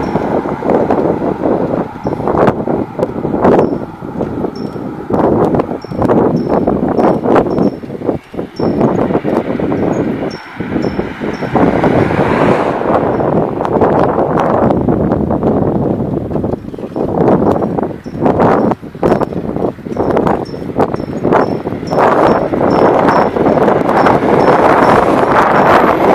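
Heavy wind buffeting the microphone of a moving camera, with frequent knocks and rattles and a faint high squeak that repeats about once a second.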